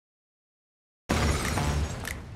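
Silence, then about a second in a sudden loud crash-like sound effect cuts in and keeps going: the transition hit that opens a TV promo's title card.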